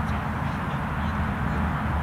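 Steady outdoor background noise: a low rumble with an even hiss above it, holding level throughout.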